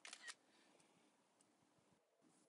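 iPad screenshot camera-shutter sound: one short double click right at the start.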